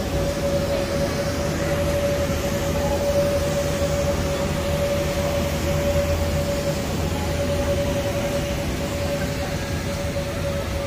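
Electric air blower keeping an inflatable bouncy castle up: a steady drone of rushing air and low rumble with a constant whine.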